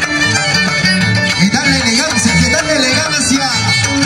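Violin and harp playing a lively traditional Andean tune for the scissors dance, the violin sliding between notes over a stepping bass line from the harp.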